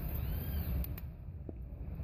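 Low, steady rumble on a handheld phone's microphone, with two faint clicks about a second in.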